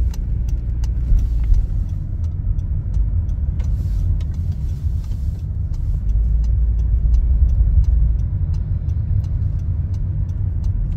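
Road and engine rumble inside a moving car's cabin, a steady low drone, with faint light ticks throughout.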